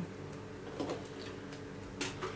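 A few faint clicks of plastic-model sprue cutters nipping a styrene part off the sprue, over a steady low room hum.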